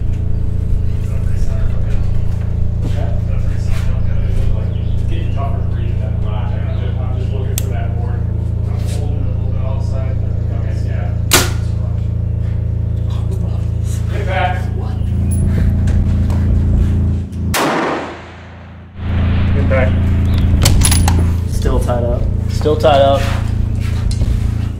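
Background music with a steady low bass line that cuts out briefly near the end. About eleven seconds in comes a single sharp snap of a compound bow being shot.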